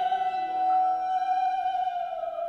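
A soprano and a violin holding long sustained notes together, the closing notes of a song. A lower held note joins about half a second in.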